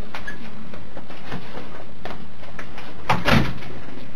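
Steady hiss of the room recording, with a door closing about three seconds in as the detective leaves the room.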